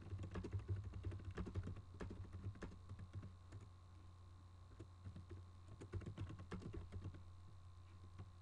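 Computer keyboard typing: quick runs of keystrokes in the first three seconds and again about six to seven seconds in, with a pause between, over a faint steady hum.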